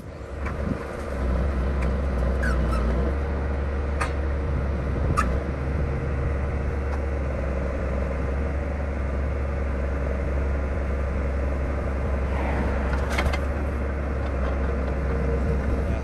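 Diesel engine of a log truck running steadily to power its knuckleboom grapple loader as it unloads logs, with a couple of short knocks about four and five seconds in.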